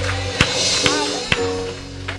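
Live church band music, with drum kit, guitars and keyboard under voices, and sharp drum or tambourine strikes about every half second. It grows quieter toward the end.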